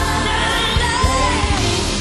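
Live pop band performance: a woman sings a sliding, bending vocal run over the band and a steady drum beat.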